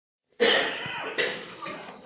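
A person coughing twice, the second cough about a second after the first.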